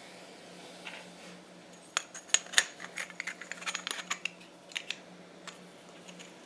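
Bent steel wire clicking and clinking in hand as it is worked and fitted to a small ceramic crucible: a quick, uneven run of light metallic clicks from about two seconds in until near the end, loudest at the start.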